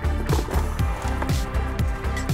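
Background electronic music with a steady, deep beat.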